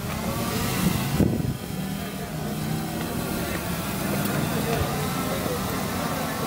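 Electric motors and propellers of a small remote-controlled aircraft hovering overhead while it lifts a flag. They give a steady hum that wavers in pitch, with a brief rise and fall about a second in.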